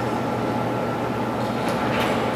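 Steady background room noise: an even hiss with a low hum and a faint steady tone, without speech.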